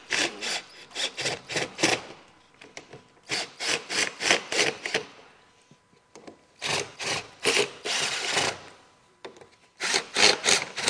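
Scraping and rubbing of hand tools in three bursts of quick strokes: screws being driven into the vent cover's hinge brackets.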